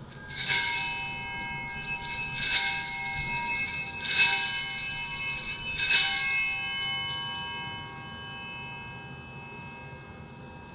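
Small hand-held altar bells (Sanctus bells) rung in four shakes about two seconds apart, marking the elevation of the chalice after the consecration; the ringing dies away about eight seconds in.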